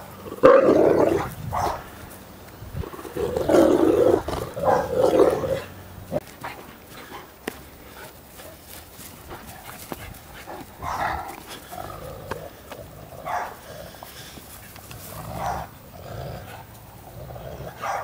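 Two dogs play-fighting, growling in bursts, loudest over the first five or six seconds and quieter and more scattered after that.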